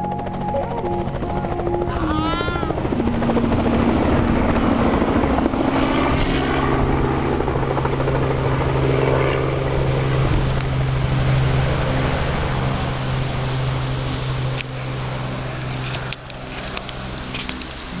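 Helicopter lifting off and flying away: the steady rotor and turbine noise swells over the first few seconds, holds, then fades toward the end.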